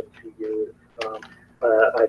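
A man's voice over a live video call: a short held vocal sound and pauses, then steady talking again in the second half.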